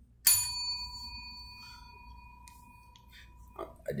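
Chrome desk service bell on a counter struck once, giving a sharp ding that rings on and fades over about three seconds, rung to call staff to the counter for help.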